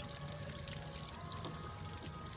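Pond water trickling and splashing, a light steady crackle, over faint steady background tones.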